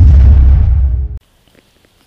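A deep, loud cinematic boom sound effect, the hit of an animated logo intro, cut off abruptly a little over a second in. Faint quiet with a few small clicks follows.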